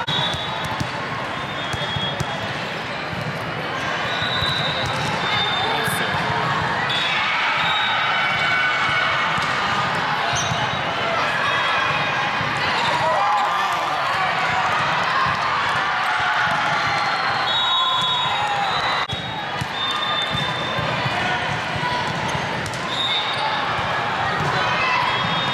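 Volleyball match in a large gym: many voices of players and spectators calling and talking, with occasional ball hits and short high squeaks of court shoes.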